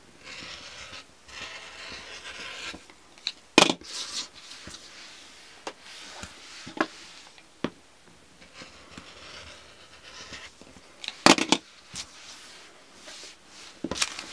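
Rotary cutter blade rolling through layered fabric on a cutting mat, a rasping cut in two stretches, with a few sharp knocks from the cutter and fabric being handled, the loudest about a third of the way in and again near the end.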